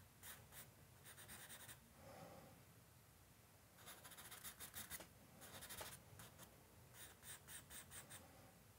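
Compressed charcoal stick scratching faintly on drawing paper in several short runs of quick strokes, hatching hair, with brief pauses between runs.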